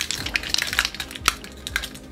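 Rapid, irregular plastic clicking and rattling from the battery box of a string of party lights and its plastic cup shades being handled, with one sharper crack just past the middle as the battery box cover is forced open.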